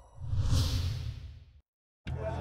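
Whoosh sound effect with a low rumble beneath, swelling about a fifth of a second in and fading away by about a second and a half, then dead silence.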